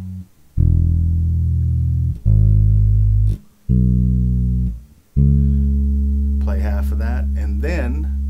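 Fender electric bass playing four fingered notes one at a time, slowly and spaced apart, as part of a simple blues line in E. The last note is left to ring for several seconds.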